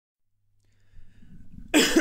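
A man bursts into loud laughter near the end, after a low steady hum and faint room noise.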